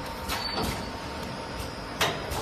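Automatic plastic ampoule forming, filling and sealing machine running: a steady machine hum with one short, sharp burst from its working stations about half a second in, part of its repeating cycle.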